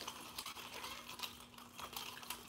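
Quiet room tone: a steady faint hum with a few soft, scattered ticks.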